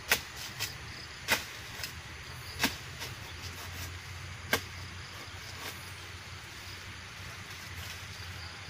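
A few sharp clicks or snaps, irregularly spaced and mostly in the first half, over a steady low rumble.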